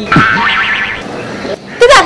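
Cartoon-style comedy sound effect: a quick falling boing-like twang over a higher ringing tone, lasting about a second.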